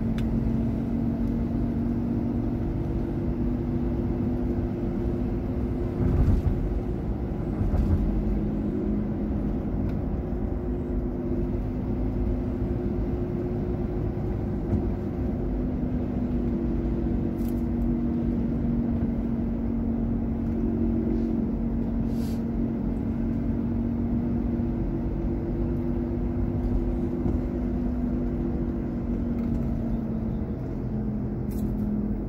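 A car being driven, heard from inside the cabin: a steady engine and road rumble with a low hum. There are two brief thumps, about six and eight seconds in.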